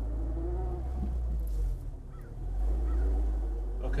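A 2008 Honda Civic Si's four-cylinder engine, breathing through a catless header and Invidia Q300 cat-back exhaust, running at low revs inside the cabin as the car pulls along on a new Exedy Stage 1 clutch and light flywheel. The low drone dips briefly about two seconds in, then picks up again.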